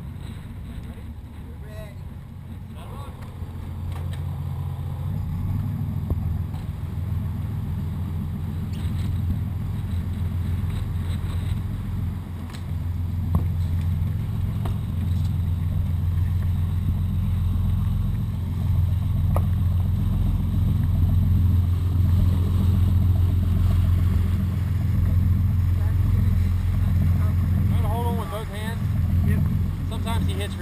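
Dive boat's engine running under way: a steady low drone that grows louder about four seconds in and again around twelve seconds, as the boat picks up speed.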